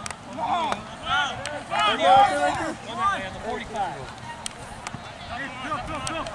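Players and spectators calling and shouting across a soccer field, several voices overlapping in short calls. There are a couple of sharp knocks about four and five seconds in.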